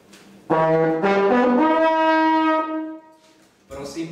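A brass instrument plays a short rising phrase of a few quick notes that ends on one long held note, lasting about two and a half seconds.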